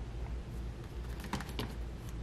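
A few faint light taps about a second and a half in, over a low steady hum.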